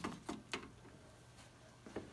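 A few faint knocks and rattles from the hinged perforated-metal back door of a 1949 Montgomery Ward Airline TV cabinet as it settles open and is let go, then quiet room tone with a single light click near the end.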